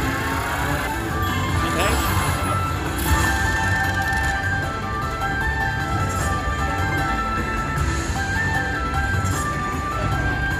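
Video slot machine's electronic bonus music, a run of short melodic tones and chimes, as the Winline respin feature finishes and its award is added to the win meter. Casino floor noise hums underneath.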